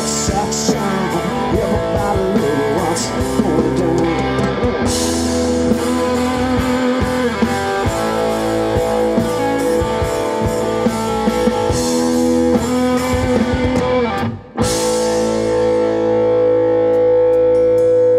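Live rock band playing an instrumental passage: electric guitar over bass guitar and a drum kit. The band cuts out for a moment about fourteen seconds in, then one long held note rings on to the end.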